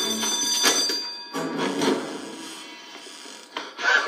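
Building burglar alarm ringing with a steady high-pitched tone, stopping about a second in.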